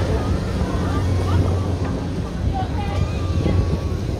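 Wind buffeting a phone microphone as it swings through the air on a fairground ride, a steady low rumble, with faint voices in the background.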